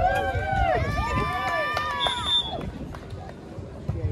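Several people's voices calling and shouting, with long drawn-out calls overlapping in the first two and a half seconds, then quieter, over a steady low rumble.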